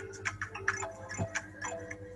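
Quizizz game background music: a light, playful loop of short notes over quick ticking, clock-like percussion.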